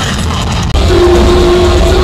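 Live heavy metal band playing at full volume, recorded from the crowd and heavily distorted. A cut a little under a second in jumps to a louder passage with a long held note.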